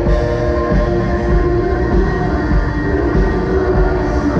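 Live worship band music: sustained electric guitar through effects pedals together with acoustic guitar, over a steady low pulse.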